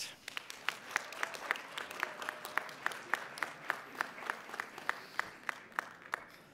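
Audience applauding, with one pair of hands close by clapping steadily about three times a second over the scattered clapping of the crowd; the applause thins out near the end.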